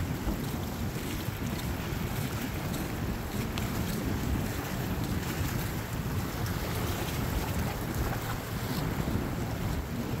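Steady wind buffeting the microphone, a continuous low rumble, with ocean water washing against the jetty's boulders underneath.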